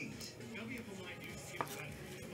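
Light clicks of trading cards being handled on a table, with one sharp tap about one and a half seconds in. Faint television speech runs underneath.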